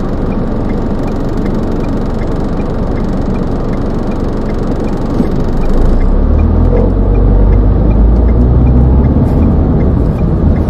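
Car interior noise while driving: steady engine and road rumble heard from inside the cabin, growing louder and deeper about six seconds in. A faint regular ticking, about two a second, runs beneath it for the first half.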